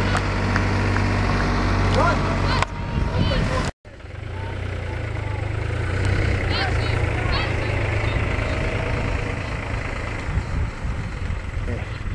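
Outdoor football-pitch ambience: distant players' shouts and calls over a steady low rumble. The sound drops out for an instant about four seconds in.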